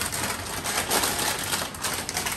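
Crinkling of a foil-lined potato chip bag as it is handled and pulled open: a dense run of crackles.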